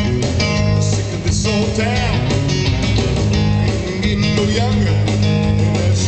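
Live blues-rock trio playing: amplified guitar taking a lead with bent notes over bass guitar and a drum kit.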